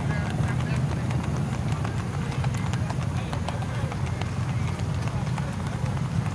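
Hooves of several Tennessee Walking Horses clip-clopping at a gait, irregular overlapping hoofbeats, over a steady low hum.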